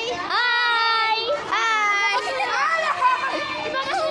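Children's voices calling out long, drawn-out high greetings, likely a stretched-out "hi": two long held calls in the first two seconds, then a shorter call that rises and falls, over other children's chatter.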